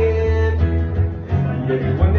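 Strummed acoustic guitar in a live solo performance, with a male voice holding a sung note over the first half second.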